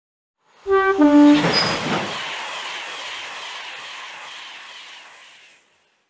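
A train horn sounding two notes, high then low, followed by the rush of a passing train that fades away over about four seconds.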